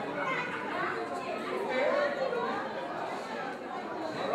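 Several people talking at once in overlapping, indistinct conversation as guests greet one another.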